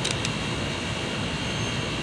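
Steady rushing background noise with a faint steady high tone, and a couple of small clicks just at the start.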